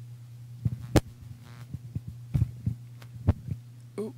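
Steady low electrical hum from the sound system, broken by about five short knocks and thumps of a microphone being handled, the loudest about a second in.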